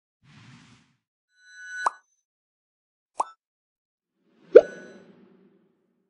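Sound effects for an animated logo: three short pops about a second and a half apart, each louder than the one before, the last and loudest trailing off with a low ringing tail. A faint soft rush comes before them.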